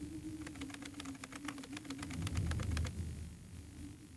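A quick, irregular run of sharp clicks, about eight a second, starting about half a second in and stopping about three seconds in, over a steady low humming tone that wavers slightly in pitch.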